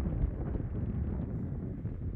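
Wind buffeting the microphone: a steady low rumble with flickering gusts.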